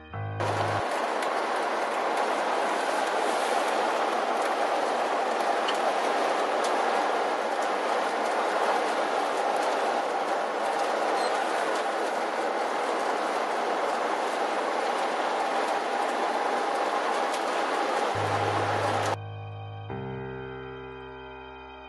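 Steady road and wind noise from inside a moving RV, an even hiss with no deep rumble. Background music cuts off at the start and comes back just before the end.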